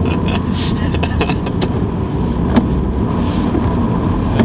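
Steady low rumble of a car's engine and tyres on a wet road, heard from inside the cabin, with a few scattered sharp clicks.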